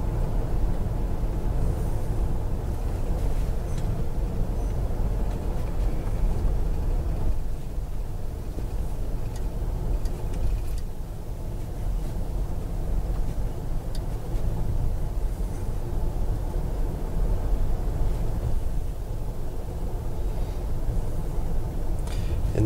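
Steady low rumble of a car driving on an asphalt road, engine and tyre noise heard from inside the cabin.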